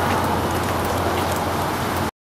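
Car engine idling with a steady low hum under an even hiss of outdoor noise.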